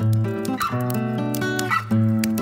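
Solo acoustic guitar playing sustained chords, two new chords struck, over the fine crackling of a wood stove fire.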